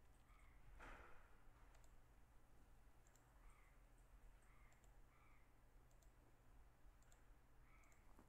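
Near silence: a low steady hum with a few faint, scattered clicks from a computer mouse and keyboard, and a soft rush of noise about a second in.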